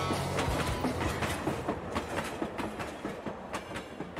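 Model railway coach rolling along the track, its wheels clicking over the rail joints in an uneven rattle that gradually fades away.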